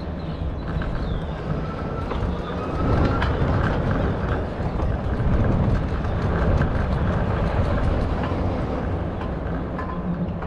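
Wind rushing over the microphone and rattling from a moving bicycle, growing louder from about three seconds in.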